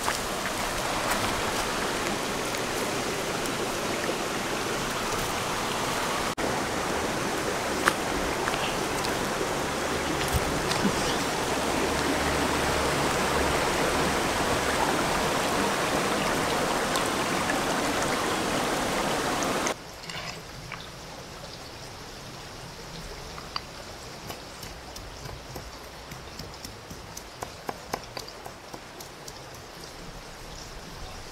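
A shallow river rushing over and around boulders, a loud, steady hiss of running water close by. About two thirds of the way through it cuts off abruptly to a much quieter, more distant flow of water, with scattered light clicks and knocks.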